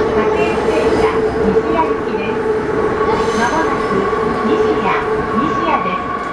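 JR East E233-7000 series electric train running, heard from inside the car: loud, continuous running noise from wheels and rails with a steady high whine held throughout.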